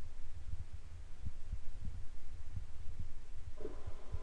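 A low rumble with irregular soft thumps; about three and a half seconds in, a reggae track starts playing from the television.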